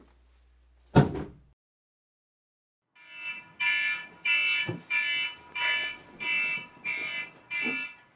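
A single sharp hit about a second in, then silence, then an electronic alarm starts about three seconds in, beeping evenly at about three beeps every two seconds.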